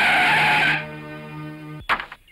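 Jeep tyres skidding to a stop, a loud screech over background music that cuts off suddenly about a third of the way in. Music carries on more quietly, and a sharp thump comes near the end.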